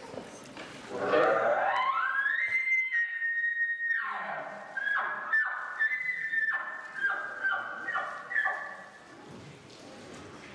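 Elk bugle blown on a game call: a low note that climbs into a long, high whistle held for about two seconds, then a run of about eight short chuckles, fading near the end.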